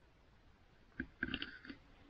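Near silence, then a faint click about a second in, followed by a few soft, brief clicking sounds.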